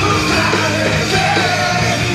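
Live rock trio playing loud: distorted electric guitar, bass guitar and drum kit, with shouted vocals over the top, heard through a GoPro in its waterproof housing.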